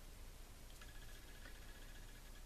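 Faint snipping of small scissors trimming the edge of a paper circle: a few light clicks with a thin, high squeak that comes and goes.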